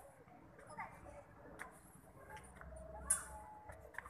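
Faint, indistinct voices in the background with scattered sharp clicks and taps, one louder click about three seconds in.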